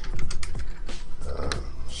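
Computer keyboard keys clicking in quick, irregular keystrokes as a layer name is typed.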